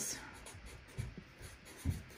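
Felt-tip marker writing on poster paper: faint scratchy strokes, with a couple of soft low thumps about halfway through and near the end.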